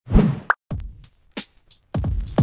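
Electronic intro music for a channel logo: a string of separate drum-machine hits and pops, several ending in a low falling thud, with a short high chirp shortly before the end.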